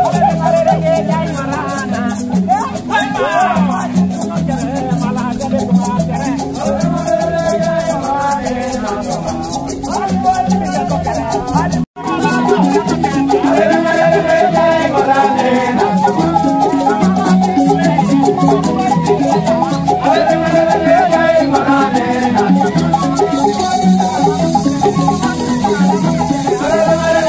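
Akogo thumb pianos and a rattle playing a fast, steady dance rhythm, with voices singing over them. The sound cuts out for an instant about twelve seconds in.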